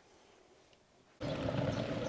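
Near silence for about a second, then a sudden cut to a steady rushing noise of riding: wind and tyre noise from a bicycle towing a child trailer along a paved cycle path.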